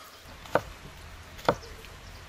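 Chef's knife chopping through button mushrooms onto a wooden cutting board: two sharp chops about a second apart.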